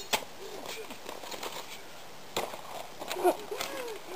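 Ice axe picks and crampon points striking and scraping on rock and ice: a few sharp clinks a second or so apart. Short voice sounds come in near the end.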